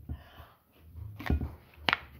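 Cooked rice being shaken out of a plastic bottle into a glass dish: a soft rustle near the start, then two sharp knocks, a little over a second in and near the end, as the bottle taps against the dish.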